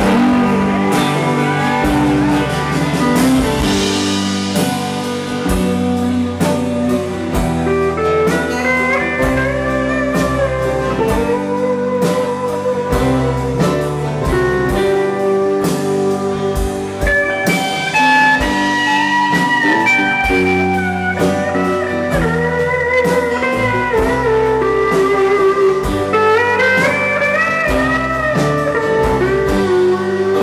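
Live country-rock band playing an instrumental break with a pedal steel guitar taking the lead, its notes gliding up and down over strummed acoustic guitar, banjo, bass and a steady drum beat.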